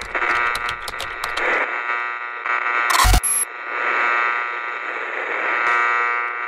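Electronic glitch-style outro sound effect: a steady buzzing drone with rapid digital crackles in the first second and a short, loud burst with a deep thump about three seconds in.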